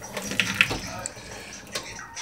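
Kitchen faucet running water into a glass held under the tap, with a couple of short clicks about half a second in.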